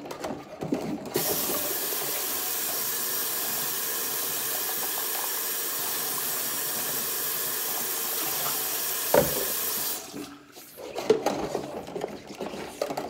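Kitchen faucet running steadily into a stainless steel sink while a cup is rinsed under it. The tap comes on about a second in and shuts off after about ten seconds, with a single knock shortly before it stops. Around the tap there are small splashes and clinks of dishes being handled in soapy dishwater.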